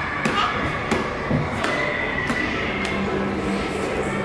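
Busy indoor hall ambience: background voices and faint music, with a series of sharp taps about two-thirds of a second apart.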